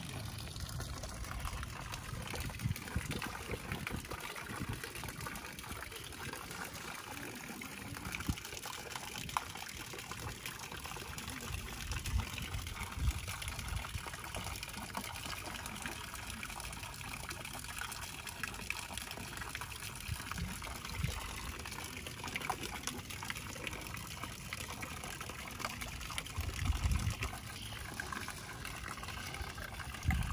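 Water trickling from a small pipe in a stone embankment wall and splashing into a pond: a steady, continuous splashing hiss, with a few brief low rumbles.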